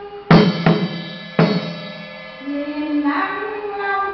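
Vietnamese chầu văn ritual music: three sharp percussion strikes that ring briefly in the first second and a half, over a sustained melodic line that picks up again near the end.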